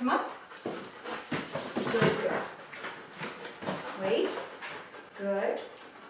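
A husky-type dog whining in short pitched cries, twice in the second half. Earlier there is a cluster of knocks and scuffs from paws and cardboard boxes as it climbs up onto them.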